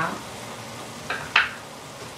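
Steady sizzling from food cooking in a stainless skillet on an induction hotplate. About a second and a half in there is a brief, sharp, scratchy sound.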